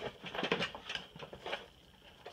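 A series of faint, irregular taps and clicks, several a second in the first half and fading toward the end.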